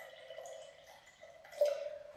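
Water poured from a glass jug into a glass jar, the stream thinning to quiet trickles and drips as the pour ends. A short, sharper sound comes about one and a half seconds in.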